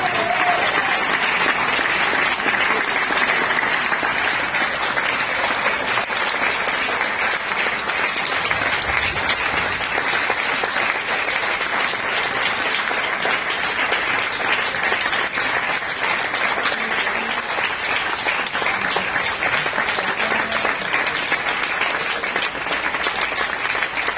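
Audience applause: many people clapping together, starting as the music ends and holding steady and dense.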